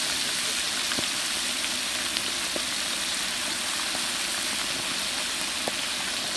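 Goat legs deep-frying in a large kadai of hot, heavily foaming oil: a steady, vigorous sizzle with a few scattered crackles and pops.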